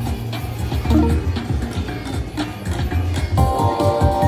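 Video slot machine's game music with a deep pulsing beat while the reels spin. About three and a half seconds in, a bright chiming win tune starts up as the win meter counts up.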